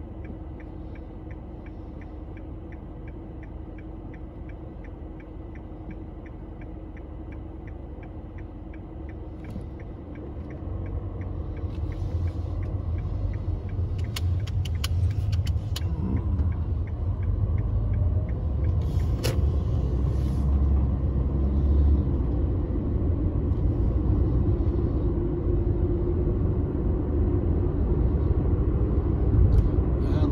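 Inside a car, a steady low rumble with a turn signal ticking about three times a second. About ten seconds in the ticking stops and the rumble grows much louder as the car pulls away and gathers speed, with a few sharp clicks partway through.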